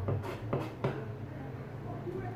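Kitchen knife scraping and tapping on a plastic cutting board as sardine guts are pulled out: three short strokes within the first second, over a steady low hum.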